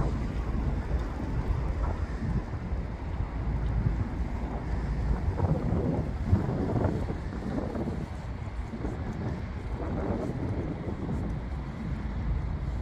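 Wind buffeting the microphone: an uneven, low rumbling noise.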